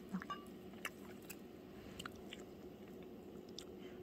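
Faint chewing of mandarin orange segments, with a few soft, scattered clicks.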